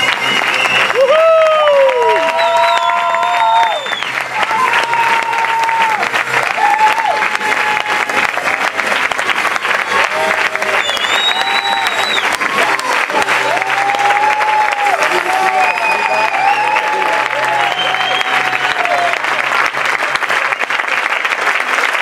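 Theatre audience applauding steadily, with voices calling out over the clapping and music playing underneath.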